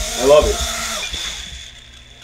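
Tiny brushless motors of a Gremlin mini quadcopter spinning with a steady high whine and hiss, dying away about a second and a half in.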